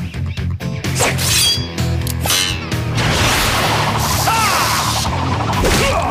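Cartoon fight sound effects over background music: a quick run of whacks, smashes and whooshes, with a longer crashing clatter in the middle.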